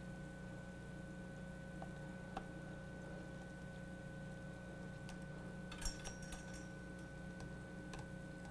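Faint steady electrical hum with a thin high tone running through it, and a short cluster of small clicks about six seconds in.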